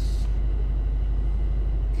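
Nitrous-equipped Ford Mustang's engine idling steadily, a low even rumble heard from inside the cabin.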